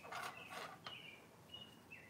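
Wooden knitting needles and yarn worked quietly as a stitch is knit through the back loop, a faint rustle near the start. Several short high chirps sound over it, each holding a pitch and then dropping.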